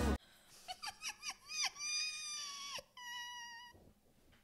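A high-pitched voice squealing: a quick run of short rising-and-falling squeaks, then a long held squeal and a second shorter, slightly lower one near the end.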